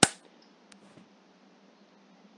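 A single sharp click or knock, then a much fainter tick under a second later, over low background hiss.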